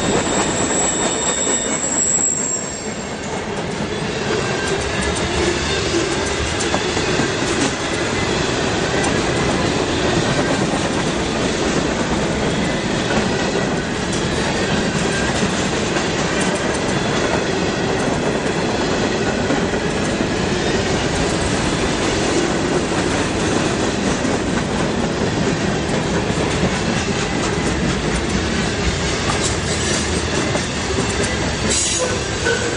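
Freight cars rolling past at close range: steady noise of steel wheels on rail with clatter from the trucks. A thin, high wheel squeal is heard for the first two seconds or so, then dies away.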